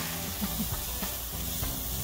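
Diced cauliflower frying in oil in a hot skillet, a steady sizzle and hiss of steam as it cooks toward tender.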